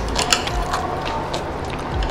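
Metal chopsticks clicking and tapping against a ceramic plate as food is picked up: a handful of small, irregular clicks.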